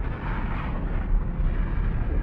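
Documentary sound-design effect: a deep, steady rumble with a faint hiss above it, laid under an animation of the sun.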